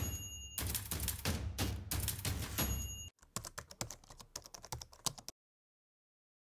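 Computer keyboard typing sound effect, a rapid run of keystrokes, switching about three seconds in to lighter, quicker clicks that stop a little after five seconds. Brief high steady tones sound at the start and again just before the switch.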